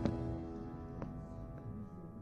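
Soft background music: held notes with a light struck note about once a second, slowly fading down.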